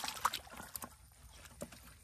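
Hands groping and splashing in shallow muddy water and wet leaves, searching for fish: a few small, irregular splashes and squelches, the loudest near the start.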